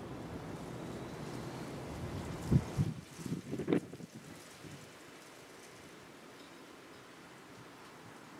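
Steady low outdoor rumble with a few short, soft thumps about two and a half to four seconds in, after which it drops to a faint steady hiss.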